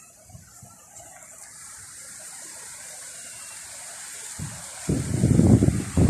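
Surf washing steadily on the shore. About four seconds in, a gust of breeze buffets the microphone with a loud, irregular low rumble lasting about two seconds.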